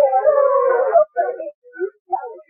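Live female vocal with the backing track stripped out: one held sung note for about a second, wavering slightly in pitch, then short broken vocal fragments. The sound is thin and cut off in the highs.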